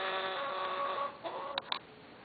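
Hens calling: a long, steady, drawn-out note that stops about a second in, then two short clucks near the end.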